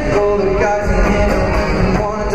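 Live amplified pop music from a concert stage: a singing voice over guitar with a steady low beat, heard from among the audience in a large arena.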